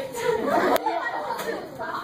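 Several girls talking over one another in a lively chatter, with two short sharp clicks partway through.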